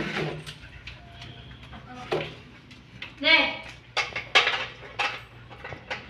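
A dog starting to eat from a stainless steel bowl: sharp clinks of the bowl and eating sounds from about four seconds in. Just after three seconds there is a short wavering voice-like sound.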